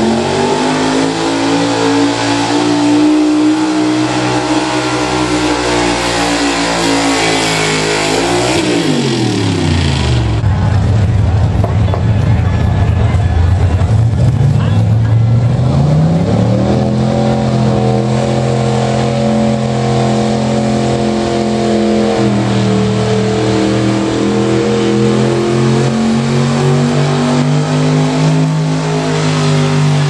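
Modified gasoline pickup-truck engines at full throttle pulling a weight sled. The first engine holds high revs, then drops to a low idle about nine seconds in. Around sixteen seconds a second engine revs up and holds high revs under load for the rest of the pull.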